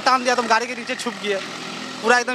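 Male speech fading out over the first second or so, leaving steady background noise.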